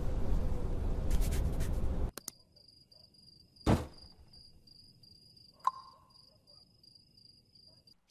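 Cartoon sound effects: a rush of wind-like noise that cuts off abruptly about two seconds in, then a steady, high, pulsing cricket chirp. One loud thud or whoosh cuts across the chirping in the middle, and a short click follows about two seconds later.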